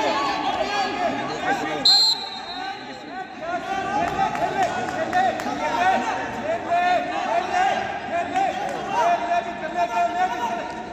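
Many overlapping voices talking and calling out in a large, echoing sports hall. About two seconds in comes one short, high whistle blast, typical of a referee's whistle stopping the action.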